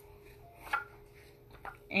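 Light knocks from a cardboard tube being handled and tipped open by hand: one knock about a third of the way in, then two fainter ones shortly before the end, over a faint steady hum.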